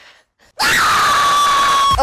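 A woman's long, high scream that starts about half a second in and is held on one steady pitch, then cut off sharply at the end.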